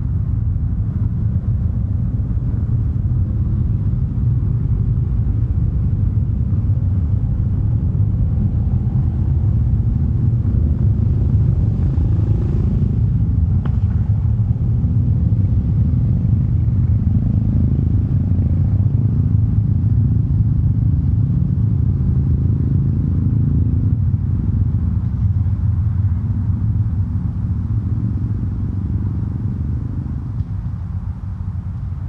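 A steady, loud low rumble of outdoor background noise, with a brief faint click about halfway through.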